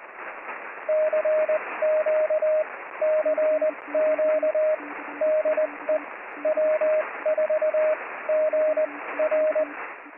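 Morse code (CW) signals over the hiss of a shortwave radio receiver: a higher tone keyed on and off in dots and dashes, joined from about three seconds in by a fainter, lower-pitched second signal.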